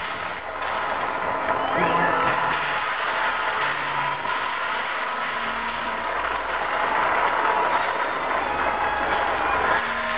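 Loud, distorted crowd noise at a live concert: many voices shouting and cheering in the hall, recorded on a small handheld camera.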